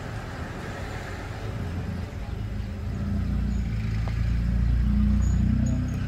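A low, steady rumble with a hum, like a vehicle engine running in the background, growing louder about halfway through.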